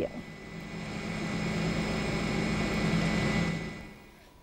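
Helicopter engine and rotor noise: a steady hum that builds over the first second or two, holds, then fades out near the end.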